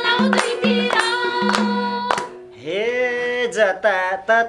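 Nepali live dohori folk song: harmonium with a steady low tone and madal hand-drum strokes in a quick even rhythm under singing. About two seconds in the accompaniment drops out briefly, and a voice glides up into a new sung line.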